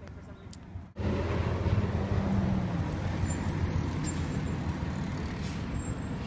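City street traffic: vehicles passing with a steady rumble, which starts abruptly about a second in. A thin high whine is held for about three seconds in the second half.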